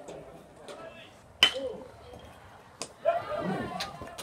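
A single sharp crack with a short metallic ring about a second and a half in, then a smaller click and men's voices calling out across a baseball field near the end.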